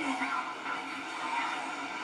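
Faint, indistinct voice in the soundtrack of a played-back video clip, with a background hum.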